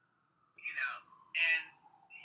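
Two short bursts of a person's voice coming through a call line, the second about half a second after the first. A faint steady tone runs underneath.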